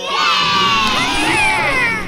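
A crowd of children cheering and shouting, many voices at once, starting suddenly and cutting off near the end: a celebration cue for a three-of-a-kind win on a toy slot machine.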